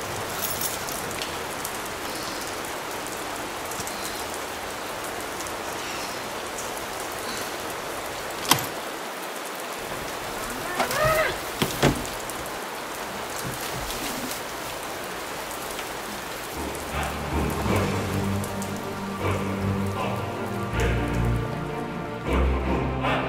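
Steady rain falling on pavement, with a sharp click about eight seconds in and a few knocks around eleven to twelve seconds. Music comes in about two-thirds of the way through, under the rain.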